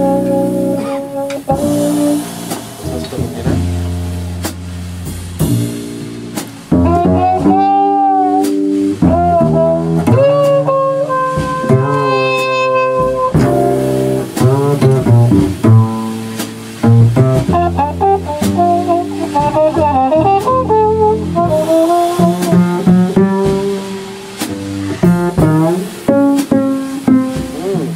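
Live small-group jazz: a trumpet plays melodic lines over walking upright double bass and a drum kit with cymbals.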